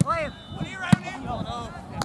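Shouts from players and people on the sideline, with the sharp thud of a soccer ball being kicked about a second in.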